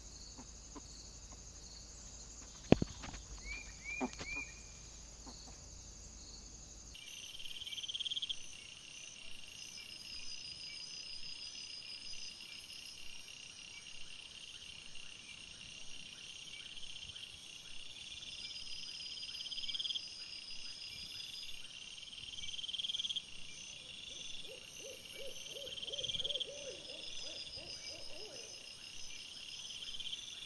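Night woodland ambience from a trail camera: insects chirping in steady, evenly repeating high pulses and trills. Near the end comes a short run of lower, evenly spaced calls. Before the cut to night, a daytime stretch has a few sharp clicks and a couple of brief rising chirps.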